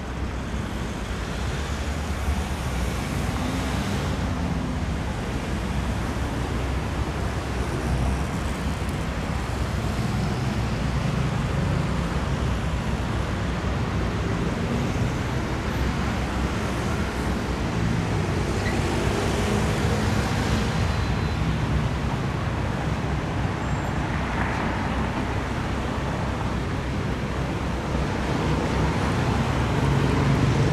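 Steady city traffic rumble, with the low engine drone of a passing excursion boat growing louder near the end as it comes close.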